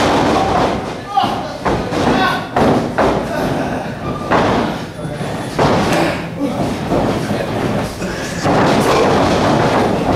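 Repeated thuds of bodies landing on a wrestling ring's mat, with voices shouting.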